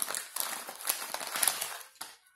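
Crinkling and crackling of a paper or plastic food wrapper being handled close to the microphone: a dense run of crackles that fades out near the end.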